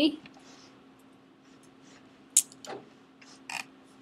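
Three short clicks in the second half from working a computer's keyboard and mouse, over a steady low electrical hum.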